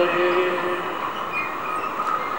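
A man's voice holding the last note of a devotional chanted call, which fades out about a second in and leaves a steady background hiss.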